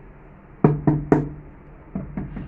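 Three sharp taps about a quarter second apart, each with a short hollow ring: a ceramic wall tile being tapped down into its bed of wet cement mortar to set it. A lighter tap follows near the end.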